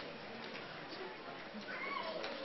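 Indistinct chatter of several voices, with a short, high rising voice-like call near the end.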